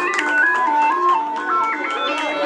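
Dance music with a bright melody stepping between held notes over a lower line, driven by a steady percussion beat.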